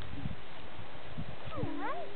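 A sheep bleating once, short and fairly quiet, near the end, rising in pitch as it goes. Faint low knocks sit under it.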